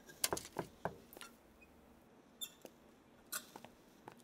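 A quick cluster of clicks and knocks as a metal thermos flask is picked up and handled. Then a few sharp footsteps on a hard floor.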